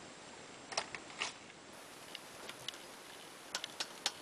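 A few faint, sharp metal clicks and light rattles as a lamp harp is lifted off its saddle: a small cluster about a second in and a few more near the end.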